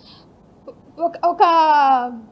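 A woman speaking Telugu. After a short pause she says a couple of words, then holds one long drawn-out syllable that falls in pitch.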